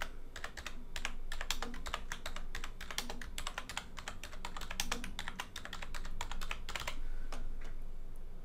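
Typing on a computer keyboard: a quick, uneven run of key clicks as a line of text is entered, thinning out and stopping near the end.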